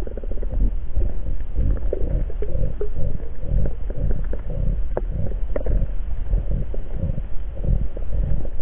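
Underwater noise recorded by a camera in a waterproof housing during a spearfishing dive: a low, uneven rumble of moving water that surges again and again, with a couple of sharp clicks around the middle.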